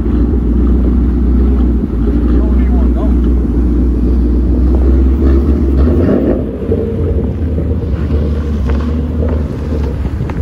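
Ford Mustang GT's 5.0 V8 engine running with a loud, steady low rumble that changes about six seconds in as the car starts moving on icy snow.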